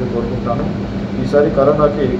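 A man speaking in short phrases into press microphones, with a steady low hum underneath.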